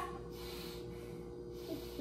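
A man taking a deep breath on request while his lungs are listened to with a stethoscope, heard as a short airy rush lasting under a second near the start.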